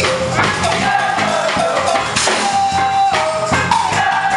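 Live jazz band playing: drum kit and percussion with electric bass, electric guitar and keyboards, and a melody of long held notes over the groove.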